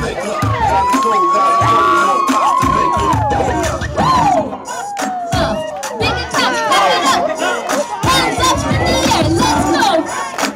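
A crowd of spectators, many of them children, cheering, shouting and whooping over break-dance music, with one long held shout that rises and falls about a second in.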